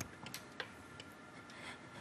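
A pause with quiet room tone, broken by one sharp click at the start and a few faint ticks after it.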